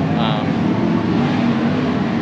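Loud steady drone of engines running in the background, with a short spoken sound near the start.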